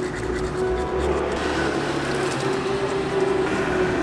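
A manual toothbrush scrubbing teeth, a steady scratchy hiss, with a low rumble of street traffic underneath.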